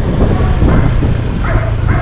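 Wind rushing over the camera microphone and the steady hum of a Honda Click 125i's small single-cylinder scooter engine while riding, with a few short voice-like sounds near the end.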